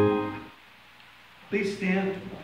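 Organ holding the final chord of a hymn, released about half a second in and dying away quickly. A short burst of a voice follows near the end.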